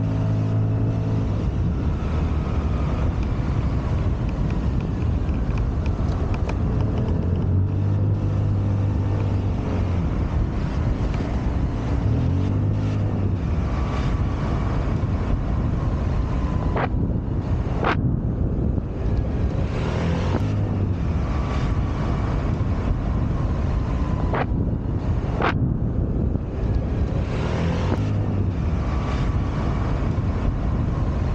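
Scomadi TT125i scooter's 125 cc single-cylinder engine running under way, its tone shifting with speed, with wind noise on the microphone. There are a few sharp clicks in the second half.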